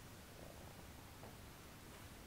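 Near silence: room tone of steady low hum and hiss, with a faint short sound about half a second in and another just after a second.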